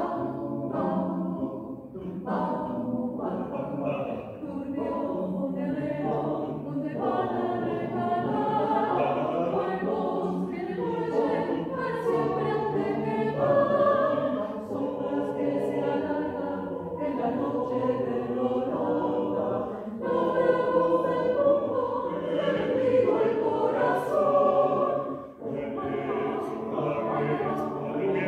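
Mixed choir of men's and women's voices singing a tango arrangement a cappella: short, detached rhythmic notes for the first couple of seconds, then fuller held chords.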